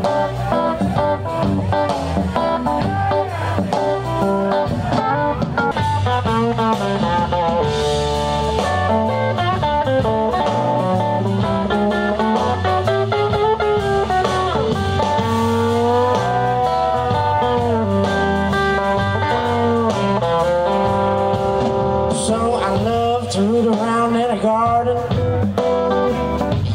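Live blues band playing: an electric guitar takes the lead with bending, sliding notes over bass guitar and drums, with no vocal line.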